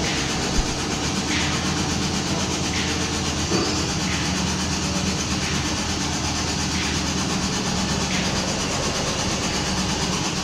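Steady workshop machinery noise in a steel fabrication shed, a constant rumble with a low hum underneath.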